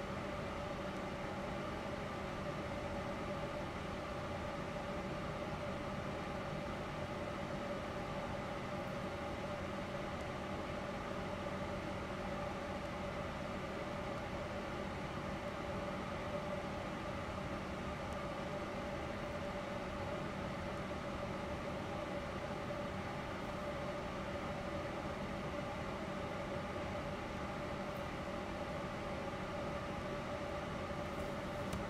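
Steady motor hum with several constant tones, unchanging throughout.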